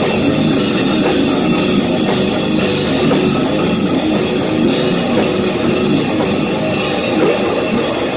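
A heavy metal band playing a song at full volume in rehearsal: distorted electric guitars over a drum kit with cymbals, dense and unbroken.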